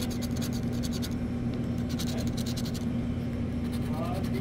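Quick scraping strokes of a pen-shaped scratcher across the coating of a scratch-off lottery ticket, coming in short bursts of rapid strokes, over a steady low hum.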